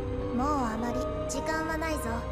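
A character's voice speaking lines of dialogue over soft, sustained background music.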